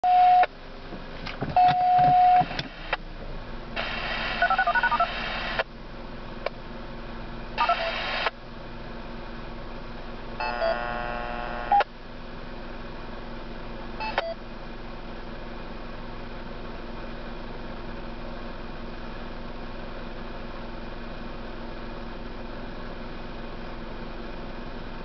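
DTMF siren-activation tone sequences heard over a radio receiver: two short single beeps, then dual-tone bursts about 4 and 8 seconds in and a buzzy multi-tone burst around 11 seconds. After that a steady low hum with hiss.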